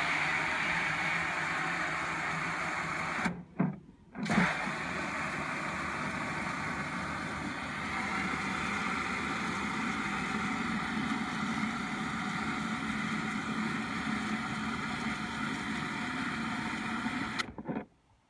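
Water from a garden hose spray gun running into a plastic watering can, half-filling it. The flow stops briefly about three seconds in and starts again with a thump, then runs steadily and cuts off just before the end.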